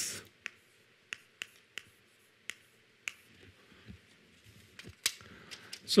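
Chalk tapping and scraping on a chalkboard as words are written: a few quiet, sharp ticks at irregular intervals, with faint rustling in between.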